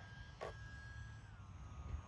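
Faint whine of the E-flite UMX Timber's small electric motor and propeller in flight, a thin steady tone that drops in pitch a little past halfway through. A brief soft sound comes about half a second in.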